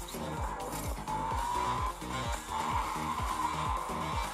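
Racing video game audio from a laptop's speakers: electronic music with a steady fast beat mixed with car engine sound effects.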